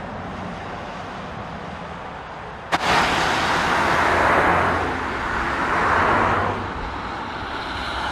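Audi Q8 TFSI e plug-in hybrid SUV driving by, heard as steady tyre and road noise on a wet road. It jumps louder at a cut about three seconds in, then swells twice as the car drives off.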